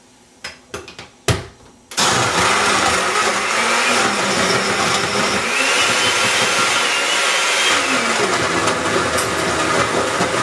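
A few sharp clicks, then about two seconds in a countertop blender switches on and runs steadily, crushing ice and frozen banana into a protein shake.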